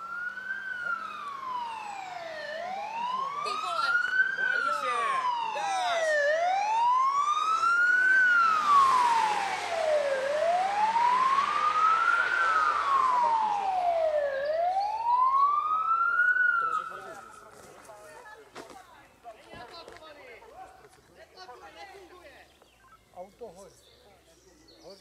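Emergency siren wailing up and down in slow sweeps, about one every four seconds, from a rescue car as it drives up. The siren is loudest with the car's road noise in the middle and cuts off about three-quarters of the way through.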